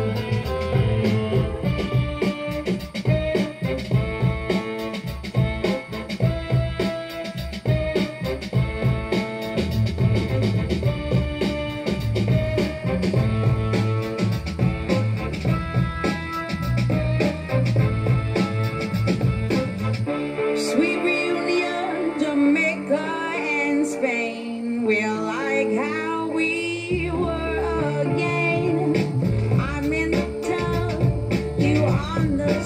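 Pop song with singing played back in mono from a full-track Tandberg Model 11 reel-to-reel tape recorder running a two-track tape at 19 cm/s. The bass drops out for several seconds about two-thirds of the way through and returns near the end.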